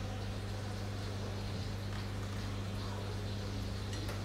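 Steady low electrical hum, deep with a fainter overtone above it, under a faint even hiss.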